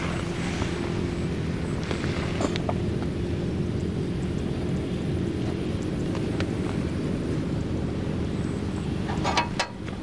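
Kubota RD85DI-2S single-cylinder diesel of a two-wheel walking tractor idling steadily at standstill. A few sharp clicks come near the end.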